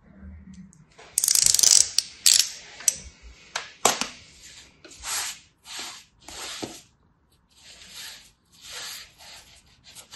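Kinetic sand crunching and rustling as it is cut with a craft knife blade and broken apart by hand: a loud gritty burst about a second in, a few sharp scrapes, then a series of short hissing swells about a second apart.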